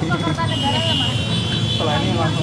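Reporters talking over one another at a press scrum, with a steady low background hum. A steady high-pitched tone comes in about half a second in and holds.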